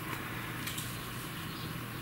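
Quiet steady background hiss of room tone, with a faint short tick about two-thirds of a second in.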